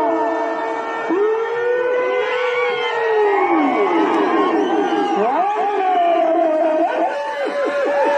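A large crowd shouting and whooping, many voices overlapping in long rising and falling calls.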